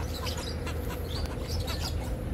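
Birds chirping: many short high calls, scattered, over a steady low rumble.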